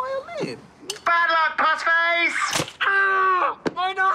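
A man's raised voice, shouting and wailing without clear words, with two short sharp clicks, one about a second in and one near the end.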